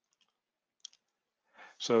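Near silence with one short, faint click a little under a second in, then an intake of breath and a man starting to speak at the very end.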